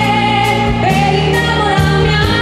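Live pop band playing: a woman sings through a microphone and PA over drums keeping a steady beat about twice a second, bass and keyboards.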